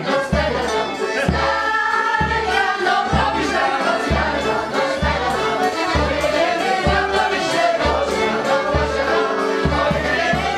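Polish village folk band of violin, accordion and drum playing a dance tune, with a group of voices singing along. A bass drum beats steadily about once a second.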